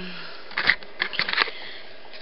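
Juggling balls and their plastic packaging handled close to the microphone: a few short rustles, about half a second in and again around a second in.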